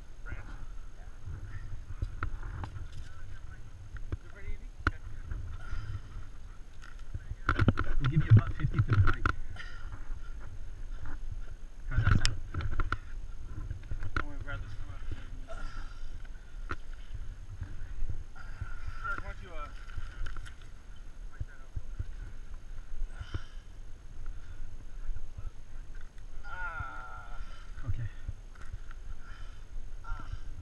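Low rumbling wind and movement noise on a helmet camera's microphone, with faint, indistinct voices. A louder burst of noise comes about eight seconds in and a sharp knock about twelve seconds in.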